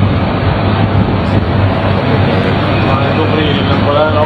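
Loud, steady street traffic noise with a constant low hum, as picked up by a phone filming from above a street, with faint voices near the end.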